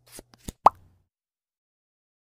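Intro-animation sound effects: a few short clicks, then a single short pitched pop about two-thirds of a second in.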